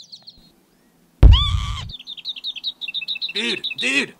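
Cartoon birds chirping in quick high tweets, broken about a second in by a sudden loud sound lasting under a second. A man's voice starts near the end.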